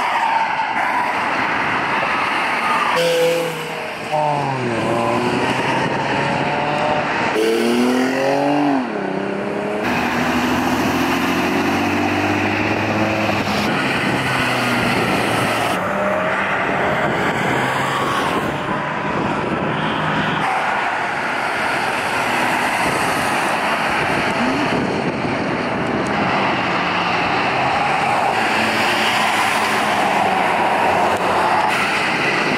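Sports cars accelerating past on the road, engines revving up and dropping back twice in the first ten seconds, then steady engine and tire noise of passing traffic.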